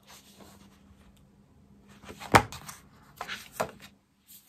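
Sheets of scrapbooking paper rustling as they are handled, with a sharp tap about two seconds in and a smaller one near the end as the sheets are laid down on the table.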